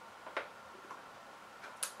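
Quiet pause with faint room tone and a soft tick about a third of a second in, then a quick sharp intake of breath just before speech resumes.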